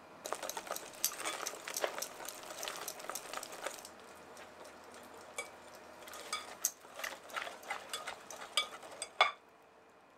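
Wire whisk stirring cake batter in a glass bowl, scraping and clicking against the glass. Dense whisking for about four seconds, a quieter pause, then quicker separate taps, the sharpest just before the end.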